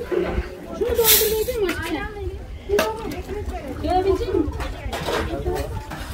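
Women's voices talking and calling to each other, not clear enough to make out, with a brief rush of noise about a second in and a click near three seconds.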